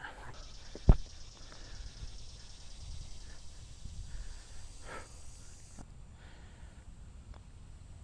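High-pitched insect buzzing that cuts off near six seconds in, with a single dull thump about a second in.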